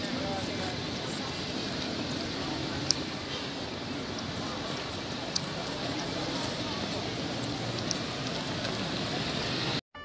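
Steady city-street background noise: a general hum of traffic and people, with a couple of faint clicks. It cuts off suddenly just before the end.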